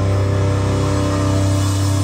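Live rock band holding a low, steady droning chord on distorted bass and guitar. The lowest note drops away near the end.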